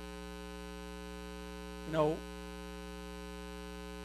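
Steady electrical mains hum with a buzzing edge, a constant tone with many overtones running under the recording.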